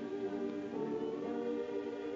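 Slow background music of a choir holding sustained chords that change about every half second.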